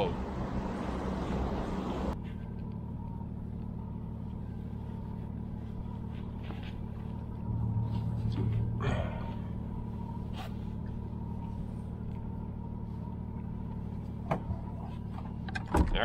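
Yamaha VMAX SHO 250 outboard, a V6 four-stroke, running at idle with a steady low hum. Wind and water noise ride on it for the first two seconds. The hum swells briefly about halfway through, with a short rustle and a few faint clicks.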